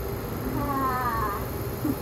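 A single short, wavering, meow-like whine lasting just under a second, falling a little in pitch. A short low thump comes near the end.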